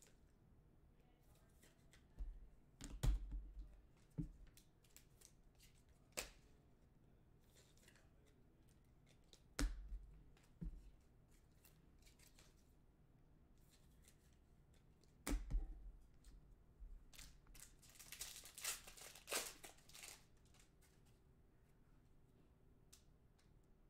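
Sparse handling noises on a tabletop, with three dull thumps. Near the end comes a longer run of crinkling and tearing as a trading-card pack's wrapper is torn open.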